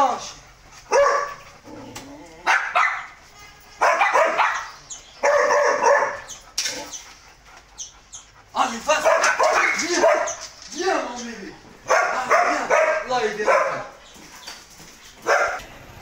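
A Belgian Malinois barking over and over while held back on a leash, in short loud calls about a second apart.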